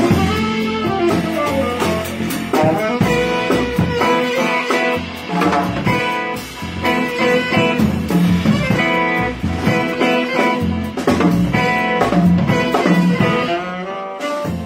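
Live modern jazz quartet playing: saxophone, electric guitar, double bass and drum kit, with the drummer working the cymbals.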